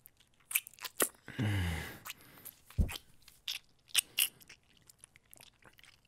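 Close-miked wet kissing and lip-smacking mouth sounds: a scattered run of short clicks and smacks, with a hummed 'mm' about a second and a half in and one soft low bump near the middle.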